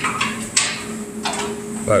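A hand or power tool working bolts out from under a pickup's bed floor, in two short hissing runs over a steady low shop hum.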